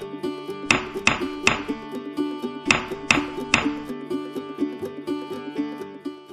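Background music on plucked strings with a steady, repeating melody. Over it, a hammer knocks three times in quick succession, about 0.4 s apart, and again a couple of seconds later, the sound of nails being driven into wood.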